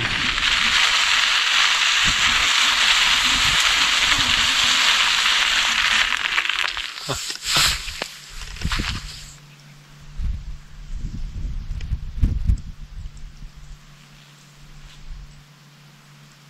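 Steady rushing noise of a bicycle coasting down a snowy forest track, with wind and tyres on snow. After about seven seconds it drops away to quieter scattered crunches and clicks.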